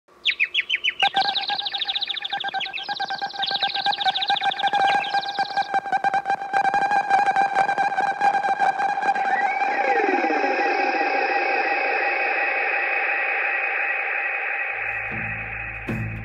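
Electronic intro sting: a steady high tone with rapid chirping blips over the first few seconds, then sweeping glides rising and falling about ten seconds in, after which the tone fades slowly. A low steady hum comes in near the end.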